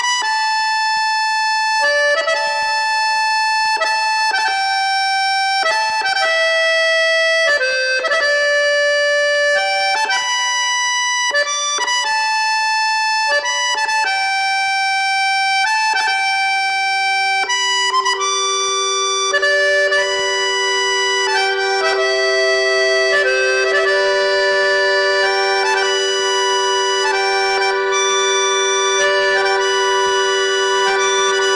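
Accordion playing a slow Scottish air as a single melody line of held notes. About halfway through, a long sustained low note comes in under it and the sound fills out with more notes at once.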